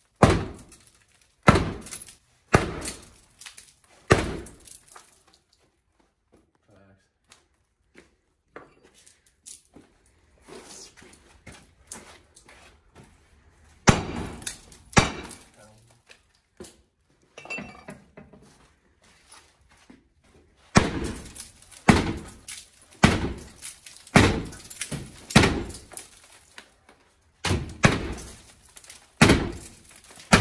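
Sledgehammer blows on a bulletproof glass door panel: heavy thuds with a glassy crackle as the glass cracks further but holds. Four blows come in the first few seconds, two more near the middle after a lull, then a fast run of about ten blows in the last third.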